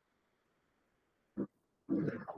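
Near silence for over a second, then a brief short voiced sound from a person, and another starting just before the end.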